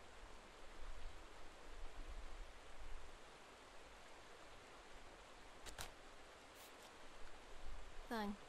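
Faint, steady hiss of outdoor night ambience, with a low rumble that swells in the first few seconds and two sharp clicks a little past halfway.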